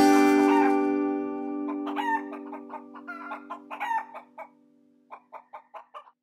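Chickens clucking in a string of short calls while a held music chord fades out under them. Near the end comes a quick, even run of about six short clucks.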